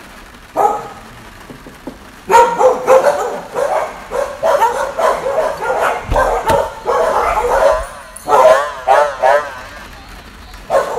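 A dog whining and yipping: one short call about half a second in, then from about two seconds in a long run of short high whines, wavering near the end.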